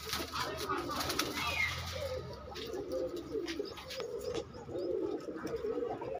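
Domestic pigeons cooing, one low warbling phrase after another throughout.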